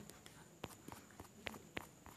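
Faint, irregular light clicks or taps, about five in two seconds, over quiet room noise.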